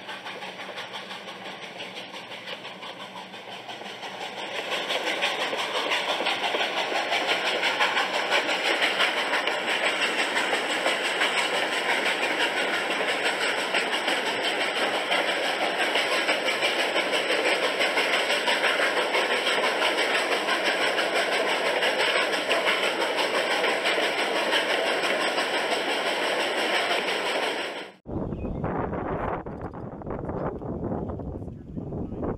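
Recording of a train running, a dense steady rumble and clatter that grows louder about four seconds in. It cuts off abruptly near the end, and a lower rumbling noise takes over for the last two seconds.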